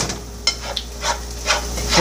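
A spatula stirring and scraping in a pan on the stove: a handful of separate short scrapes, about one every half second.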